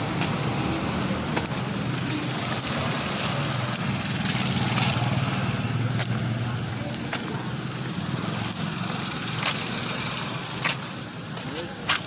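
A small motorcycle engine idling steadily, fading in the last few seconds, over street traffic noise with a few sharp clicks.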